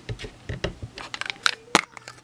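Small hard-plastic ink blending tools being handled and knocked together: a scatter of light clicks and taps, sharpest near the end.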